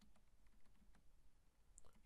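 Faint computer keyboard keystrokes: a few soft clicks in the first second and one more near the end, as a short word is typed.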